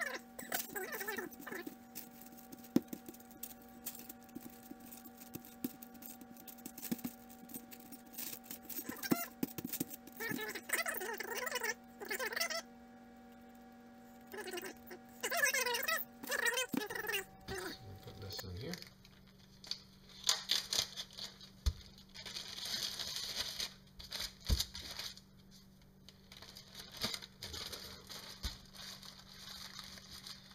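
Hands kneading and squeezing a lump of homemade air-dry clay on parchment paper: irregular soft clicks, rustling and crinkling of the paper, over a steady low hum.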